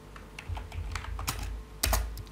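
An irregular run of sharp clicks and soft low knocks, densest in the second half and loudest near the end.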